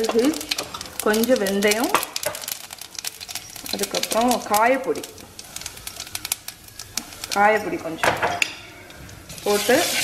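Spice seeds frying in hot oil in a stainless steel kadai, sizzling with many small crackling pops as they splutter.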